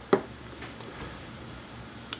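A single sharp plastic click just after the start as the hinged cap of a Hanna Checker meter is pressed shut over the sample vial, followed by a couple of faint handling ticks.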